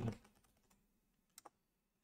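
Faint computer keyboard keystrokes: a quick pair of clicks about one and a half seconds in, with near silence around them, as a terminal command is typed and entered.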